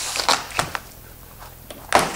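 Cardboard shipping box being opened by hand: flaps scraping and rustling against each other, then a sharp knock near the end.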